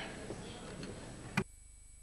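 Faint room noise from a public-address microphone, then a single sharp click about one and a half seconds in, after which the room noise drops away almost to silence, as when a microphone is switched off.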